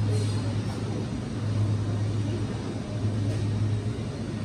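A steady low hum throughout, with a brief crunch right at the start as a breaded, deep-fried fish cake on a stick is bitten into.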